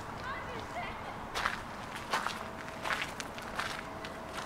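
Footsteps crunching on a fine gravel path, four steps about 0.7 s apart, from someone walking at an easy pace.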